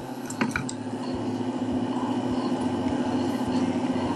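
A steady low hum with a constant pitch, with a few small clicks about half a second in as fingers pick at food.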